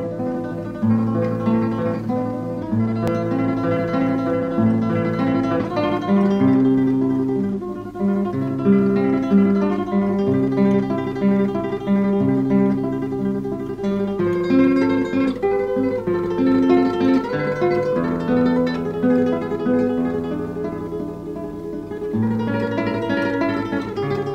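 Background acoustic guitar music: a plucked melody over low bass notes, moving steadily from note to note.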